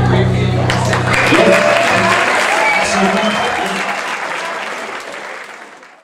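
Concert audience applauding, with some shouting, as the band's last held chord rings out and stops about two seconds in. The applause then fades away toward the end.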